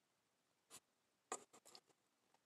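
Near silence broken by a few faint taps and rustles, a hand handling the recording phone: one short tap less than a second in, then a quick cluster of small clicks near the end.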